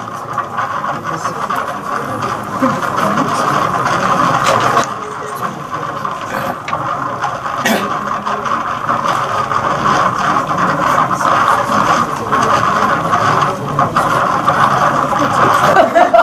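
Indistinct voices over a steady background noise, with no clear words.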